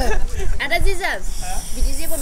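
A voice speaking briefly, then a steady hiss for most of the last second, over a constant low rumble.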